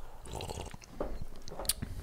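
A man sipping coffee from a mug close to the microphone: quiet sips and swallows with small mouth clicks, and one sharper click just before the end.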